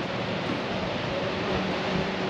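Steady, even rush of ocean surf breaking on the beach, with a faint low hum underneath.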